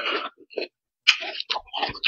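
Close-miked chewing of a mouthful of noodle salad: wet mouth sounds in irregular bursts, with a short pause a little past the middle.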